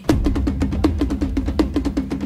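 Opening of a Tamil film dance song: fast, even drumbeats, about eight or nine a second, over a steady low bass.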